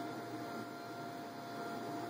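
A steady high-pitched electrical hum over faint room hiss.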